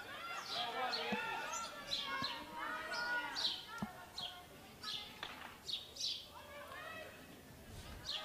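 Distant shouts of field hockey players calling to each other across the pitch, in short bursts throughout, with a few sharp knocks among them.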